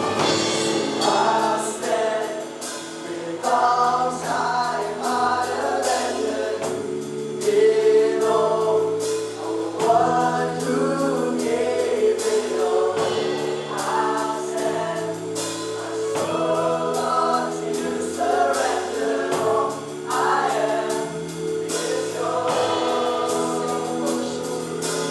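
Live worship band playing a song: a male lead singer sings over drums, electric guitar, bass and keyboard.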